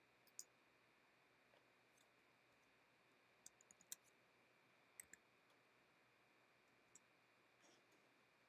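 Faint clicks of a computer mouse and keyboard against near-silent room tone: a single click near the start, a quick run of four about three and a half seconds in, a pair at about five seconds, and a couple more near the end.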